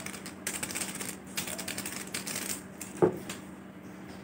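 Foil seasoning sachets crinkling and rustling in the hands in a rapid run of crackles, followed about three seconds in by a single sharp knock.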